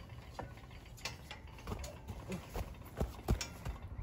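Footsteps crunching on wood-chip mulch, with scattered knocks that get busier and louder in the second half and a couple of heavy thumps about three seconds in.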